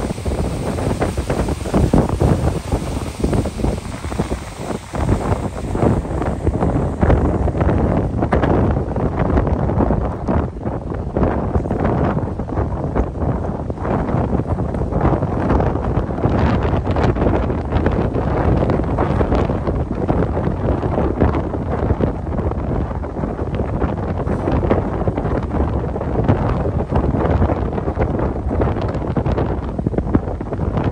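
Strong wind buffeting the microphone aboard a lake passenger ship under way: a loud, uneven rumble.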